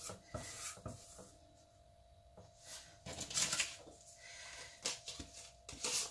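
Scattered light taps, clicks and rustles of cardstock and a dragonfly cutting die being handled and laid on a clear acrylic cutting plate, with a small cluster of taps around the middle.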